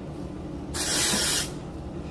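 A single spray from a Not Your Mother's aerosol dry shampoo can: a hiss lasting under a second, about midway through.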